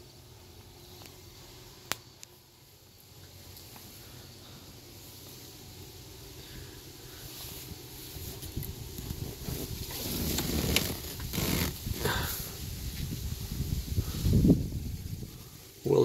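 Rustling and rubbing noise from a handheld phone being moved about, growing louder from about halfway, with a single sharp click about two seconds in.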